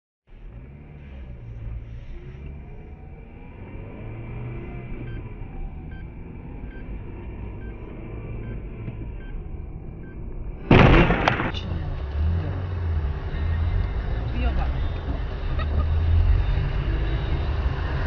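Car cabin noise picked up by a dashcam: a low engine and road rumble while driving. About ten and a half seconds in, a sudden loud burst of noise, then a louder, rougher road and engine rumble that builds toward the end.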